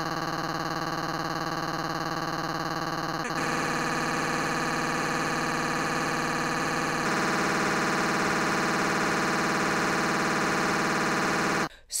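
A steady, buzzing electronic drone held on one pitch, of the kind made by looping or stretching a tiny slice of audio through effects. Its tone shifts twice, a little over three seconds in and again about seven seconds in, and it cuts off suddenly just before the end.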